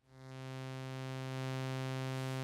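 Behringer Cat analog synthesizer oscillator sounding a steady, low, buzzy sawtooth drone. It fades in over the first second and a half, then holds one pitch.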